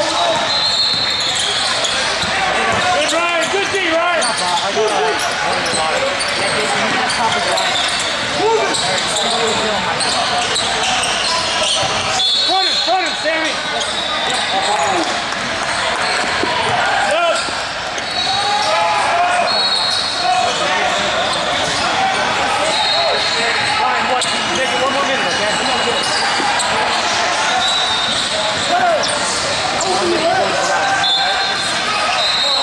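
Basketball game in a large echoing gym: a ball being dribbled on the court, with short high squeaks and unbroken chatter from players and spectators.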